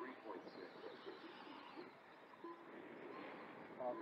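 Faint whine of electric Losi Pro Moto RC motorcycles on the track, rising and falling in pitch as the riders work the throttle, under background voices.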